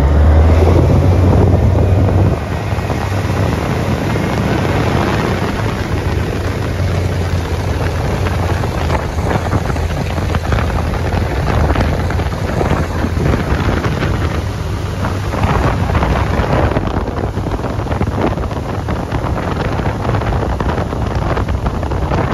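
Mercury four-stroke outboard motor opened up hard from low speed, loudest with a deep drone for about the first two seconds, then running steadily at speed with rushing water and wind buffeting the microphone.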